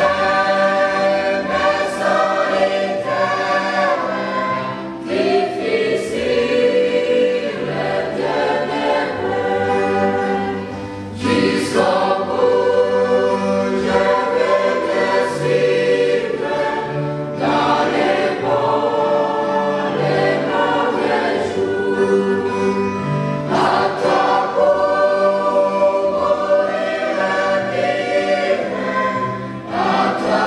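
Mixed choir of women's and men's voices singing a French hymn in parts, in phrases of about six seconds with short breaths between them.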